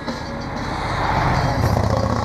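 Motorcycle approaching and passing close by, its engine and road noise swelling to loudest in the second half.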